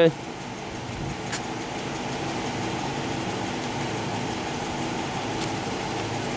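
Police cruiser's engine idling steadily close by, with one faint click about a second and a half in.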